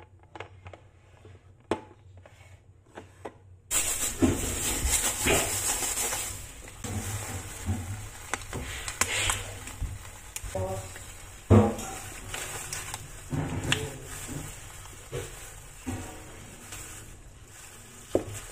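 A few light taps of tin cans on a countertop, then, after an abrupt jump in background hiss, rustling and crinkling of a foil chocolate-bar wrapper and a plastic glove, with irregular knocks on the counter, one sharp knock standing out.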